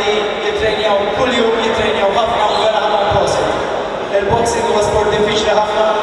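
A man announcing into a microphone over a public-address system.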